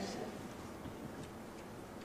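Quiet room tone in a pause between sentences, with a few faint ticks.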